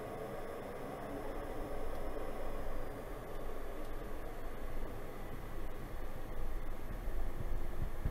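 Steady cockpit noise of a Pilatus PC-12NG turboprop rolling out on the runway just after touchdown, with the power back: a hiss over a low rumble, and a few low thumps near the end.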